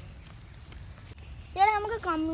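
Low rumble under a faint steady high whine, then a child's high-pitched voice breaks in about one and a half seconds in, speaking or calling out.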